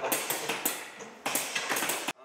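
Light metallic clicks and taps of small metal parts being handled and fitted on aluminium rail boards, scattered, with a quick cluster in the second half.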